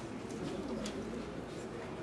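A voice speaking quietly and at a distance in a reverberant hall, with slow rises and falls in pitch, as in a spoken prayer.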